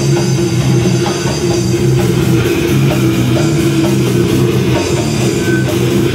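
Live rock band playing loud and without a break: electric guitar and drum kit.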